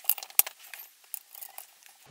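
Light metallic clicks and clinks of the retaining pin being pushed back into the stock of an A&K M249 airsoft gun. The sharpest click comes about half a second in, followed by a few fainter ticks.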